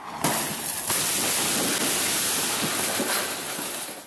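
A loud, steady rushing noise on a home security camera's audio. It starts abruptly and steps up about a second in.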